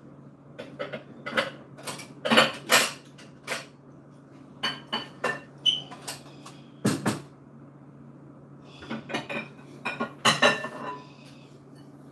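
Dishes and bowls clattering and clinking as they are handled and taken out of a kitchen cupboard. The sharp clinks come in three bursts, with brief pauses between them.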